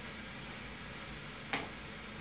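Steady hiss of a window air conditioner running, with one sharp click about a second and a half in.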